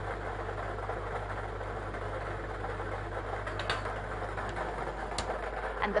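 Lottery ball draw machine running, with a steady rattling noise of the balls mixing over a low hum and a few faint clicks in the second half as the third ball is drawn.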